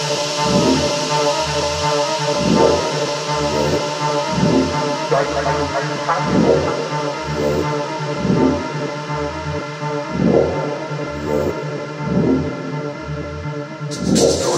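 Techno track in a breakdown: sustained synth chords over a bass note pulsing about twice a second, with no kick drum or hi-hats.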